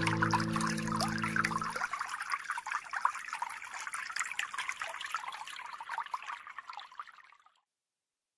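The last held notes of the accompaniment die away within the first two seconds, leaving a steady trickle of running water, which fades out about half a second before the end.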